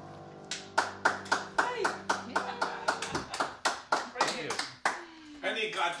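A handful of people clapping after a piano song, as the last piano chord rings out under the first claps. Voices talk over the applause, and near the end it gives way to talk and laughter.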